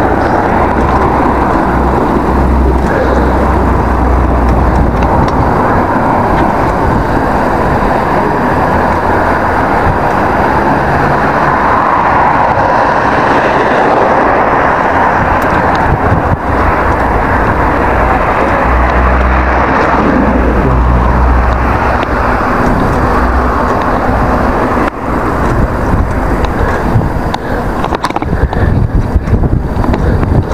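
Wind buffeting the microphone of a handlebar-mounted action camera on a moving bicycle: a loud, steady rushing noise with heavy low rumbles in gusts. It is loud enough to spoil the recording, and it turns choppier and more uneven near the end.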